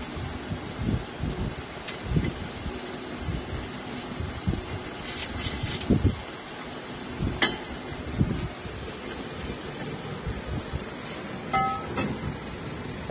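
Steel attachment parts knocking and clicking as a bracket is worked into place by hand, with one sharp click past the middle and a short metallic ring near the end.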